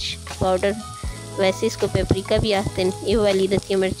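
Chicken pieces sizzling as they fry in oil in a non-stick pan, under louder background music with a singing voice.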